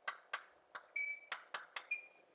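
Chalk writing on a blackboard: about eight quick, irregular taps and strokes of the chalk, with two short high squeaks, about a second in and at the end.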